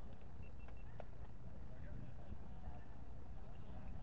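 Outdoor ambience: faint distant voices talking over a steady low rumble, with a single sharp click about a second in.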